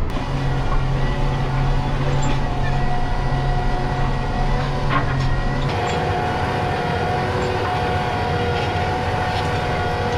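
John Deere 8270R tractor's six-cylinder diesel running steadily under load while pulling a subsoiler through the field, heard first from inside the cab as a steady low drone. A little over halfway through, the sound switches to outside behind the tractor, where the engine and the subsoiler working the ground are heard with a steadier, higher hum.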